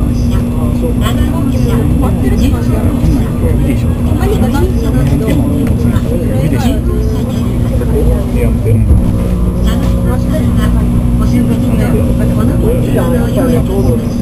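Cabin noise of an N700 series Shinkansen running at speed: a steady, loud rumble with low humming tones, with a further lower hum joining about nine seconds in.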